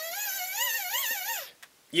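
Hand-powered dynamo flashlight whirring as it is worked: a whine that rises and falls in pitch with the pumping speed, powering its lit beam, then stops about one and a half seconds in.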